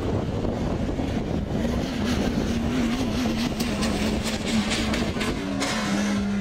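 Yamaha YXZ1000R side-by-side's three-cylinder engine running on a dirt track, its pitch wavering as it is driven, with music playing over it.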